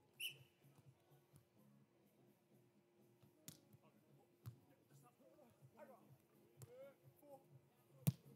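Near silence, with a couple of faint thuds from a volleyball being struck midway through.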